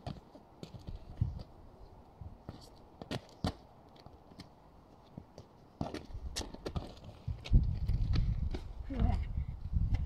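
Scattered sharp knocks of a football being kicked and trapped, and of shoes on tarmac. A low rumble comes in about halfway through.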